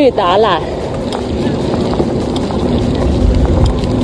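Wind rushing over the microphone of a moving bicycle rider, a steady noise with a low rumble that grows stronger near the end; a short spoken word at the start.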